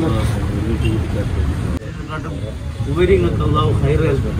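A man speaking tearfully, his voice rising and falling, over a steady low rumble; the sound breaks off abruptly about two seconds in and the voice resumes, louder, near the end.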